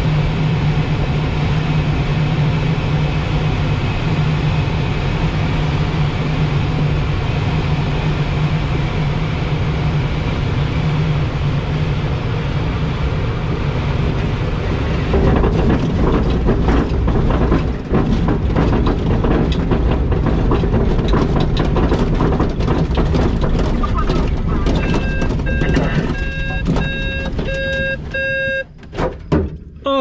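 Airflow rushing over the wing of a Blaník glider on final approach, then from about halfway the landing roll on grass, louder and rough with many bumps and rattles. Near the end a series of short electronic beeps sounds as the glider slows to a stop.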